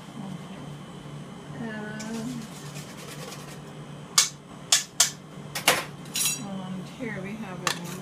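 A metal spoon clinking against cookware about six times, from about four seconds in, the last strike ringing briefly, as béarnaise sauce is spooned out. Faint voices murmur in the first half and near the end.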